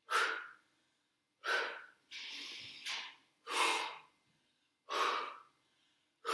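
A woman's forceful breaths through the mouth, kept in time with a flowing yoga sequence: four sharp exhalations about a second and a half apart, each quickly fading, with a longer, softer inhale about two seconds in.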